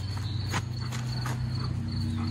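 Insects chirping in a steady run of short, high pulses over a continuous low hum.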